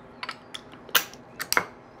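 Glass lid set on a Weck glass jar and its metal clips snapped shut: a few sharp clicks and clinks, the loudest about a second in and another half a second later.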